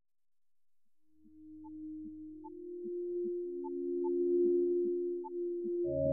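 Electroacoustic music synthesized in SuperCollider, fading in from silence. Steady pure tones enter one after another and swell over a faint low hum, with short scattered blips above and below them.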